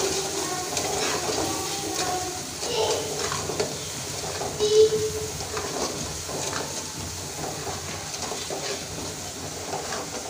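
Onions and spice masala frying in oil in an aluminium pot, sizzling steadily while a slotted metal spatula stirs and scrapes irregularly against the pan.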